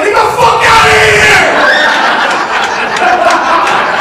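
Comedy club audience laughing and cheering loudly after a punchline, with shouts from the crowd; the outburst is heaviest for the first second and a half, then settles into steady laughter.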